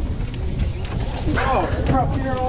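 Steady low rumble of the sportfishing boat's engine and wind, with a wavering pitched voice coming in about one and a half seconds in.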